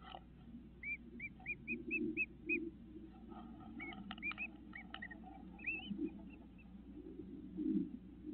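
Bird chirping: a run of about six short, evenly spaced chirps a second in, then a few scattered chirps around the middle, over low rustling as a bird shifts in the nest material.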